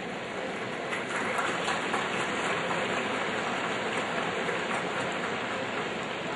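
Crowd applause, a dense even clatter of many hands clapping, swelling about a second in and easing slightly near the end.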